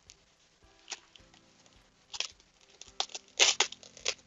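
Clear plastic sheet over a stingless-bee hive box crinkling in short bursts as it is peeled back. The rustling is loudest in a cluster near the end.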